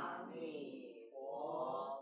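Buddhist chanting of a mantra: slow, long sung phrases with a gently rising and falling pitch, one fading out about a second in and the next beginning right after.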